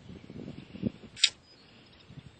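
Soft rustling and low bumps from hands handling the phone and the lizard, with one short, sharp hissing swish a little past halfway.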